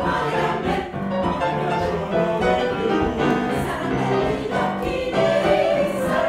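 Mixed choir of women's and men's voices singing in harmony, holding sustained chords that shift every second or so.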